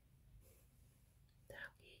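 Near silence: room tone, with a brief soft whisper about one and a half seconds in.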